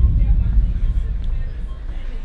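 A sudden deep bass boom that rumbles and slowly fades away over about three seconds.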